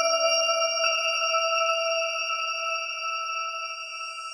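New-age music: a sustained synthesizer chord that holds and slowly fades, with a soft note added about a second in.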